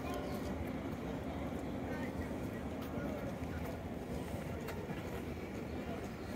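Open-air ambience: a steady low rumble with faint background voices.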